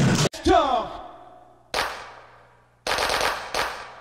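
Music cuts off abruptly about a third of a second in, followed by a short falling pitch sweep. Then come three sharp bangs, each ringing out and fading for about a second. The last two are close together.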